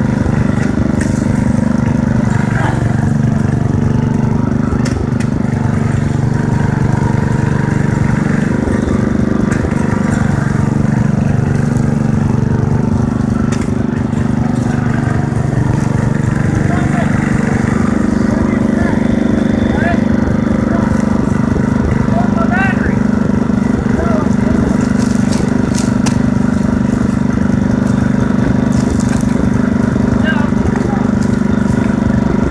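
Small riding lawn mower engine running steadily as the mower drives through shallow water, its pitch shifting slightly a few times.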